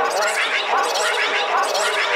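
Dark psytrance track in a stretch without kick drum or bass: dense, gurgling, voice-like synth textures with quick warbling pitch glides, going on without a break.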